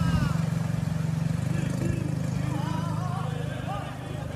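Motor scooter engine running steadily as it rides through floodwater, its hum growing weaker near the end. Faint voices in the background.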